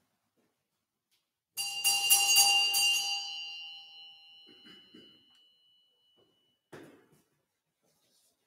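A cluster of small altar bells shaken for about a second and a half, then left ringing and fading over a few seconds. A short thump near the end.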